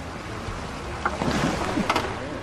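Sound effects of a trebuchet throwing a stone: wood creaking under strain and a rushing whoosh that swells in the second half, with a sharp crack about a second in and another near the end.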